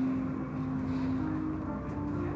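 Automatic car wash machinery running, heard from behind the viewing-area glass: a low rumble with a steady hum tone that steps up slightly in pitch near the end.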